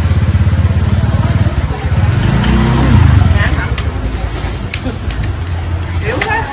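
A motorbike engine running close by with a low, fluttering rumble, swelling to its loudest about three seconds in as it passes, then easing off.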